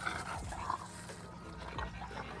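A dog whimpering faintly, a couple of short whines in the first second.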